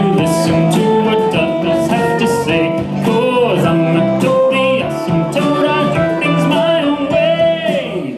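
Electric guitar playing a single-string melody, one note at a time, with a few notes sliding up and down in pitch, over a backing track with a steady bass line.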